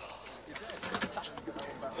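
Faint men's voices in the background with a few scattered light knocks, then a man beginning to say 'good' at the very end.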